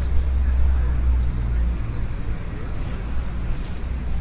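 2020 Yamaha YZF-R3's 321 cc parallel-twin engine idling steadily with a low exhaust hum.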